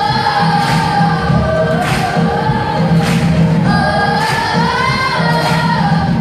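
Children's choir singing long, held sung notes with a drum kit keeping the beat.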